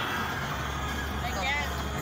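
A car's steady low engine hum heard inside its cabin. Past the middle a voice with a wavering pitch comes in briefly.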